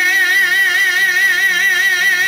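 Albanian folk song: a male singer holds one long note with a steady, even vibrato over a quiet accompaniment.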